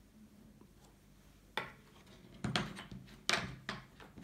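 Wooden game discs clacking on a wooden tabletop and against each other as they are set down and gathered from a stack. After a quiet start there are a handful of sharp knocks, the first about one and a half seconds in.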